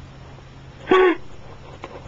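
A man's single short, high-pitched whimpering sob about a second in.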